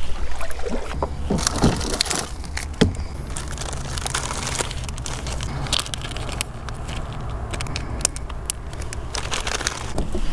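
Crinkling and crackling of a plastic soft-bait package being handled, in scattered clicks over a steady low rumble.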